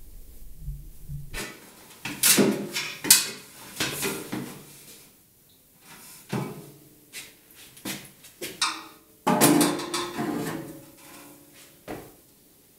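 Aluminium ladder being handled and shifted, giving a run of irregular metallic clatters and knocks, some ringing briefly, from about a second and a half in.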